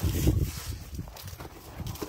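Gloved hands rustling through cucumber leaves and vines, with an irregular low rumble that is strongest in the first half-second.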